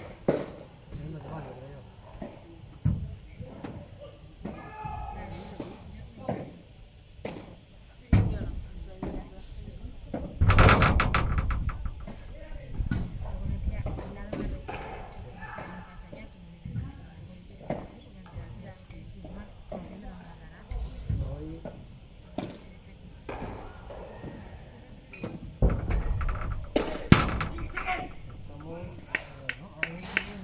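Padel rally: a padel ball struck back and forth by paddle rackets, a string of sharp, irregularly spaced pops and knocks as it is hit and bounces, with players' voices between shots.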